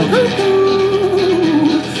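Live country music: an acoustic guitar strummed with a Fender steel guitar, and one held note that wavers near the end.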